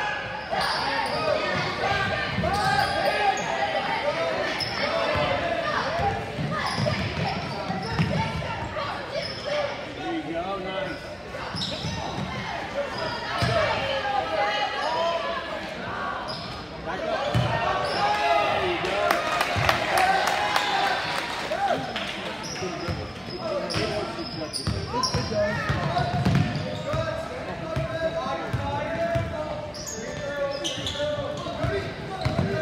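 Youth basketball game in a gym hall: a basketball bouncing on the hardwood floor amid the echoing chatter and shouts of spectators and players. The crowd noise swells briefly about two thirds of the way through.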